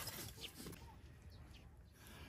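Faint knocks and scraping of a shovel blade among burning logs and stones in a fire pit near the start, then quiet outdoor background with faint bird chirps.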